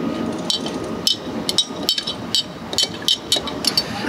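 Metal bar spoon clinking against the inside of a glass Kilner jar while tea bags are stirred in hot water. The light, irregular clinks come roughly twice a second.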